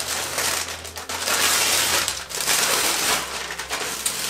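A gift being unwrapped by hand: wrapping paper tearing and crumpling, then the plastic bag around the item inside crinkling. The rustling grows louder about a second in.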